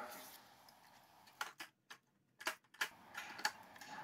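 A few faint, sharp clicks and taps, about half a dozen spread over two seconds, from hands working the velcro battery strap and batteries in a scooter's battery compartment.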